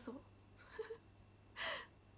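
A woman's short audible breaths: a faint one about halfway and a louder, sharper one near the end.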